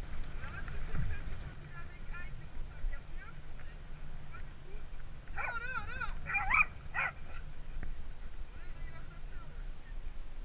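A dog gives a short run of high, wavering yelps and whines about five to seven seconds in. Under it runs a steady low rumble of wind and bike tyres on a gravel path.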